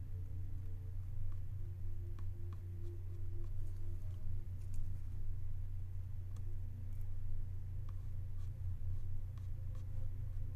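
Faint scratching and light ticks of a small paintbrush stroking acrylic paint onto canvas, scattered and irregular, over a steady low hum.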